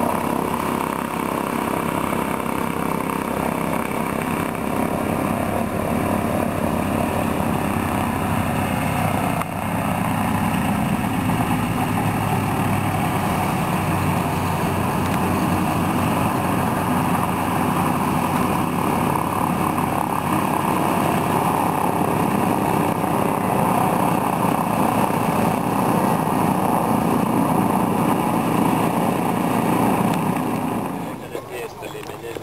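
Douglas DC-3's two radial piston engines running at low taxiing power, a steady drone with a brief dip about nine seconds in.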